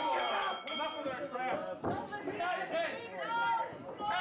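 Several people's voices talking over one another, with no clear sound besides speech.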